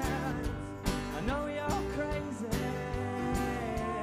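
Live pop-rock band playing: drum kit keeping a steady beat under guitar, with a woman singing lead.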